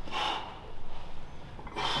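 A man's sharp breath through the nose, a short hiss, as he braces for a heavy one-arm dumbbell row, followed by quieter breathing.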